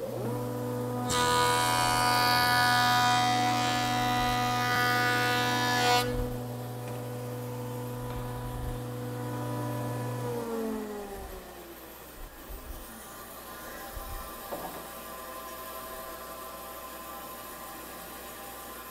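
A jointer motor and cutterhead start up with a steady hum. A board is skimmed across the knives for about five seconds, with a loud rushing cut. The machine is then switched off about ten seconds in, and its pitch falls as it winds down.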